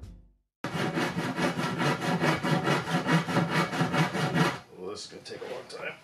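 Handsaw cutting lengthwise through a wooden board in quick, even strokes, about six a second. The sawing starts about half a second in and becomes quieter and sparser for the last second and a half.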